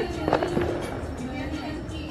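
A quick cluster of firecracker pops a fraction of a second in, over crowd voices and background music with a held tone.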